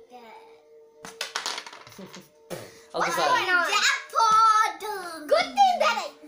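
A few light clicks of carrom pieces about a second in, then a child's wordless sing-song voice sliding up and down in pitch, which is the loudest sound. A faint steady tone runs underneath.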